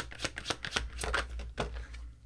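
A tarot deck being shuffled by hand: a quick, irregular run of card flicks and slaps that thins out near the end.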